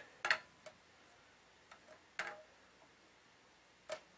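A few scattered light clicks and taps as a tennis racket is set down on a wooden balance jig resting on two digital kitchen scales and pushed against its stop.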